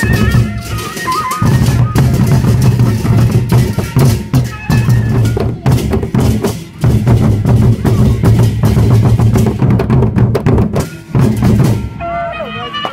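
Gendang beleq ensemble playing: large double-headed Sasak drums beaten in dense, fast patterns with crashing hand cymbals. The playing drops out briefly about a second and a half in.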